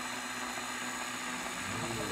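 The electric motor of a Dessert Bullet frozen-dessert maker runs steadily with a low, even hum while frozen fruit is pressed through it and soft-serve comes out of the spout into a cone.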